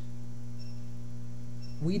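Steady low electrical mains hum, one unchanging pitched drone with a few higher overtones. A man's voice begins a word right at the end.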